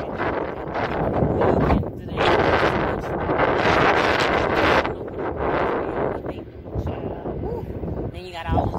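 Wind buffeting the microphone in several loud gusts of a second or more, swelling and dropping away, with a woman's voice partly buried under it.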